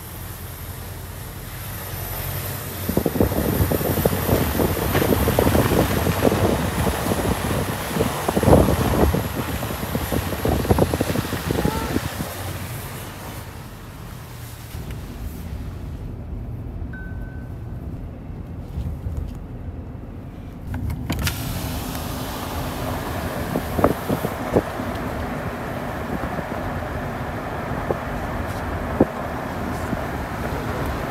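Road and tyre noise heard from inside a moving Land Rover Defender, louder and rougher for several seconds, then quieter. About two-thirds of the way through, the sound changes abruptly to a more open rush of traffic and wind.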